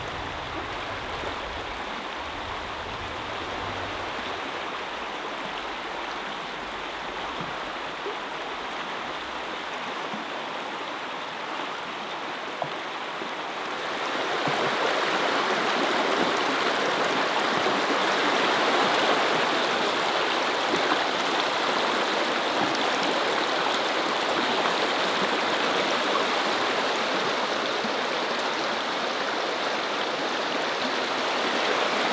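Shallow rocky brook flowing steadily over stones and riffles, a continuous rush of water that grows louder about halfway through.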